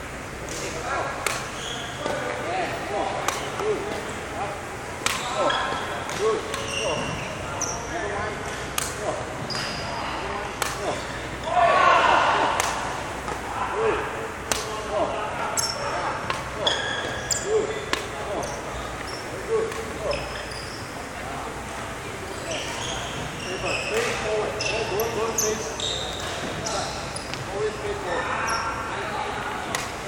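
Badminton rally sounds on a wooden hall floor: many short sharp racket strikes on the shuttlecock, with brief high shoe squeaks and footsteps in between. Voices in the background now and then, loudest about twelve seconds in.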